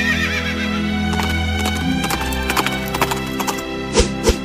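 Horse sound effect over background music: a whinny with a wavering pitch at the start, then a quick run of hoofbeat clip-clops from about a second in.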